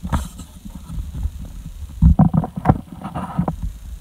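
Low rumbling handling noise on the microphone, with a few knocks about two seconds in.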